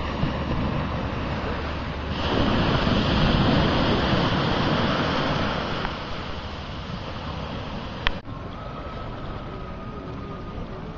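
Wind rushing on the microphone over the wash of sea water, swelling louder for a few seconds and easing off. A single sharp click comes about 8 seconds in.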